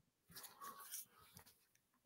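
Near silence: room tone, with a few faint short sounds in the first second.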